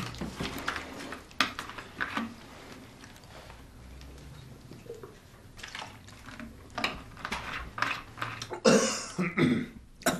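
Handling noise from a plastic bottle and a folded newspaper: scattered clicks, knocks and paper rustles, with a louder burst of handling about nine seconds in.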